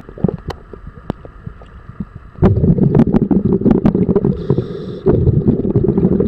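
Underwater, a scuba diver's exhaled breath bubbling out of the regulator in a long loud rush that starts about two and a half seconds in, breaks off briefly near the end and starts again. Scattered sharp clicks are heard throughout.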